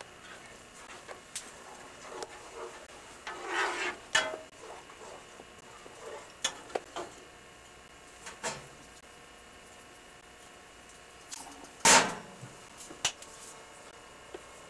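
Kitchen clatter of a utensil working in a pan on the stove while gravy is stirred: scattered light clinks and knocks, a short scrape about three and a half seconds in, and one loud knock near the end.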